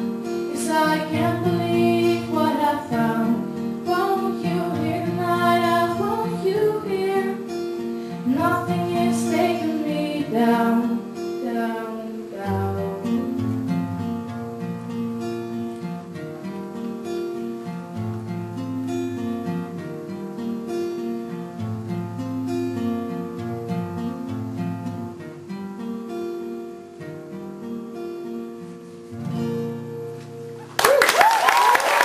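A woman singing live over an acoustic guitar for about the first ten seconds. Then the guitar plays on alone, growing quieter toward the end.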